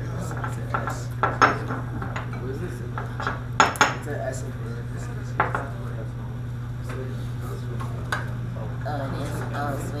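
A ceramic mortar and pestle and a spatula clinking and scraping as zinc and sulfur powders are mixed. The clinks are short and scattered, with the loudest pair about three and a half seconds in.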